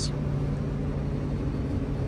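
Self-propelled forage harvester running under load while chopping corn for silage, heard as a steady low engine and machinery drone with a constant hum inside the cab.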